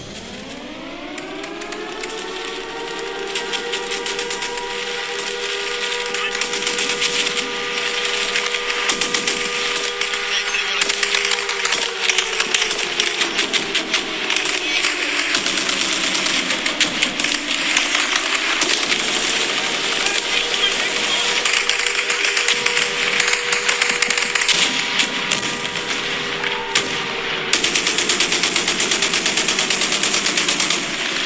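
War sound effects after the music ends: rapid machine-gun fire throughout, over a wailing siren-like tone that winds up over the first few seconds, holds, sags about halfway through and winds up again.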